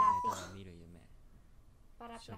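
An animated dog-like creature's high whine, held level and ending a moment after the start, then a faint voice.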